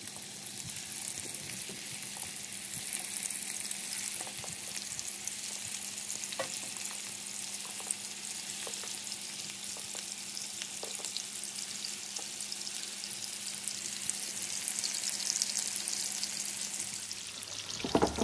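Lamb kofta patties frying in shallow oil in a steel frying pan over a gas flame: a steady sizzle, with a few faint pops.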